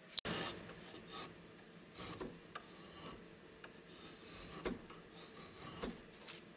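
Repeated rasping strokes of a hand-held, red-handled shaping tool along the edge of a maple spatula blank clamped in a vise, about one stroke a second. A single sharp click just after the start is the loudest sound.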